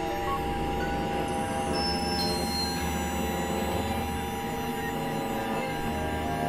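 Dense, layered electronic music: several tracks overlapping at once as a thick drone of steady held tones over a low rumble, with no clear beat.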